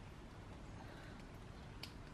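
Faint, steady outdoor background hush with a single soft click near the end.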